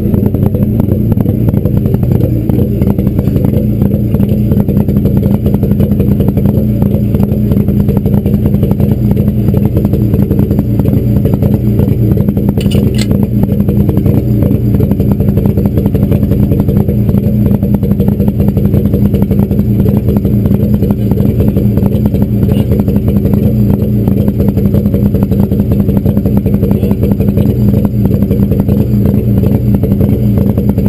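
Rally car engine running loud and close at a steady pitch, with little change in revs, and a brief sharp click about thirteen seconds in.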